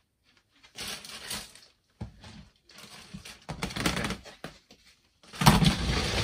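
Rummaging through plastic storage boxes and bags: rustling and knocking in several short bursts, the loudest near the end with a heavier knock as a box is shifted.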